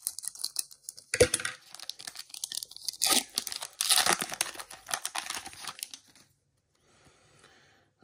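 Scissors snip a foil trading-card pack about a second in, then the foil wrapper crinkles and tears as it is pulled apart. The crinkling is loudest about three to four seconds in and dies away about six seconds in.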